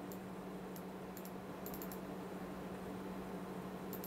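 A few faint, scattered clicks from a computer mouse and keyboard in use, over a steady low hum and hiss.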